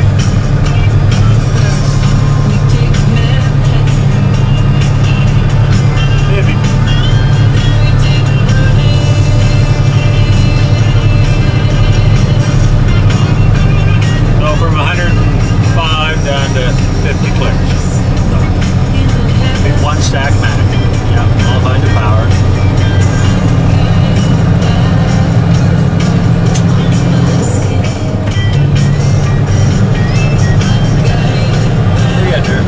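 Heavy truck's diesel engine droning steadily in the cab while cruising at about 60 km/h and 1,300–1,400 rpm, with music and a voice playing over it around the middle.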